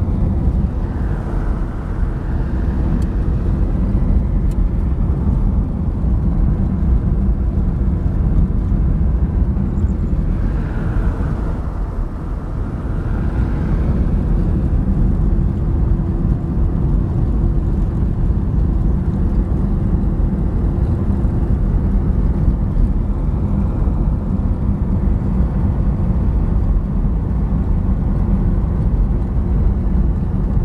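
Steady engine and road noise inside a moving car's cabin, with a brief dip and swell about twelve seconds in.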